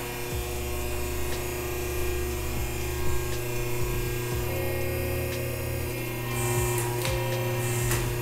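Electro-hydraulic plate press running steadily with a motor hum as it stamps a licence plate, with a few light clicks and two short hisses near the end.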